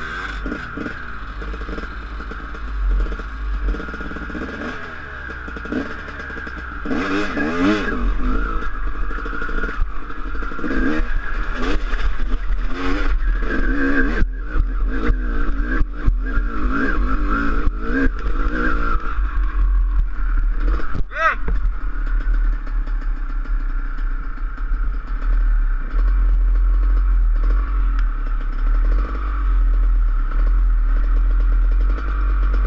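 Dirt bike engine running over a rough grassy trail, its pitch rising and falling as the throttle is worked, with a few sharp knocks from bumps. Heavy wind rumble on the helmet-mounted microphone runs underneath.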